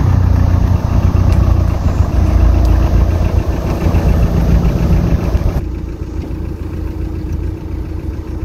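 Audi A5's engine running, heard from low behind its twin exhaust tailpipes. About two-thirds of the way through the sound turns duller.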